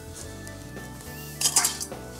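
Stainless-steel kitchen bowls clinking and clattering briefly as one is lifted out of another, a short burst of metallic knocks about a second and a half in, over soft background music.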